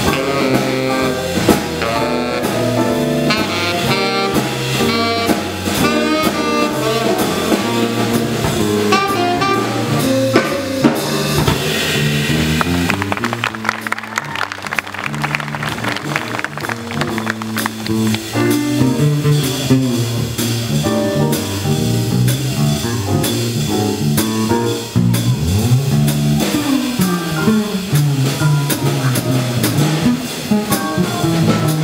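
Live jazz combo playing: a saxophone solo line over electric bass, drum kit and keyboard. About twelve seconds in, the saxophone line drops away and the rhythm section with guitar carries on.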